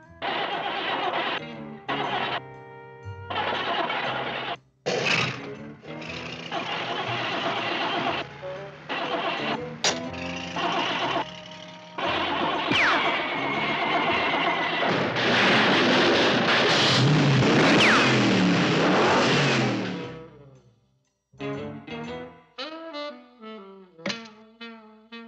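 Animated-cartoon soundtrack: music mixed with jeep engine sound effects. It is choppy and stop-start at first, then turns into a long loud stretch with whistles gliding in pitch. This cuts out about twenty seconds in, and pitched brass music takes over near the end.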